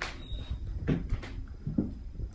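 Quiet room with a few faint, short clicks about one second in and again near the end.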